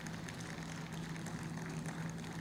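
A steady low hum with faint scattered ticks, and no speech.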